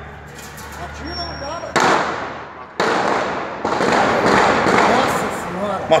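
Gunfire in a shootout between robbers and police, heard from across the street through a phone microphone: sudden loud bangs, the first about two seconds in, then more about a second apart, each leaving a long echoing tail.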